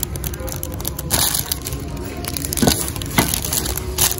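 Cellophane wrapping on a gift bucket crinkling and crackling as it is handled, with a denser crackle about a second in and a couple of sharper knocks later.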